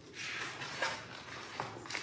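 A hardcover picture book being handled and opened: the cover and paper pages rustle, with a couple of light taps, one a little before the middle and one near the end.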